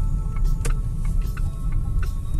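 Low, steady rumble of a car's engine and tyres heard from inside the cabin while it drives slowly, with a few light clicks.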